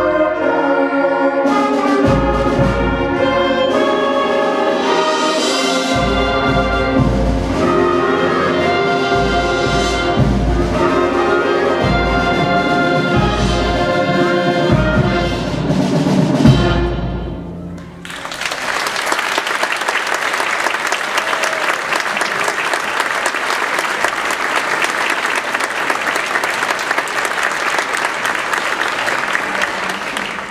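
Middle school concert band playing, brass to the fore, building to a loud final chord about 17 seconds in. The audience then applauds steadily.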